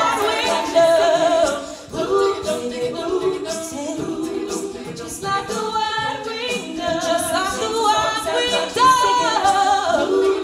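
Female a cappella group singing: two lead voices over sustained backing vocals, with vocal percussion ticking at a steady beat. The sound dips briefly about two seconds in.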